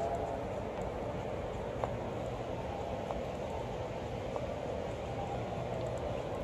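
Steady low hum and hiss of a large, quiet indoor hall, with a couple of faint ticks.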